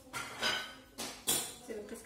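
A few short bursts of small hard objects clinking and rattling, with faint voices under them.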